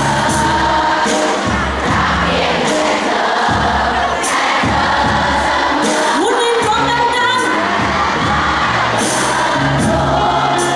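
Live band playing a Thai pop song: a lead vocalist singing over acoustic guitar, electric guitar and drums.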